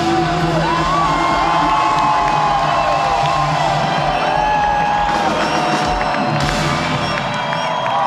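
A live rock band playing the closing notes of a song, with held, bending notes over a steady low bass, while a festival crowd cheers and whoops.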